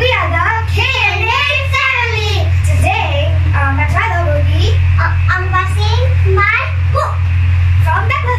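Children talking in high voices, with a steady low hum underneath throughout.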